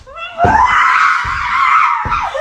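A woman's high-pitched scream, rising at first and then held for about a second and a half, starting about half a second in. Dull thumps of her body landing on a mattress sound under it.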